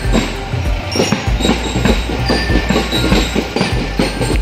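Procession band drums playing a fast, dense beat of closely packed strikes, with band music underneath.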